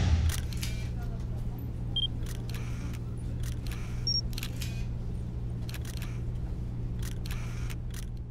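Outro sound effects of a camera at work: repeated shutter clicks, often in pairs, over a steady low hum, with two short electronic beeps about two and four seconds in.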